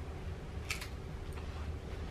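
A brief crisp crunch about two-thirds of a second in as a Pringles potato chip is bitten, with a fainter crunch shortly after, over a low steady room hum.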